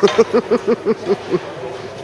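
A woman laughing: a quick run of about eight "ha"s over the first second and a half, then fading into a low background murmur.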